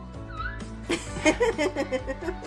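A six-month-old baby's high, wavering vocal squeals start about a second in and repeat several times, over background music.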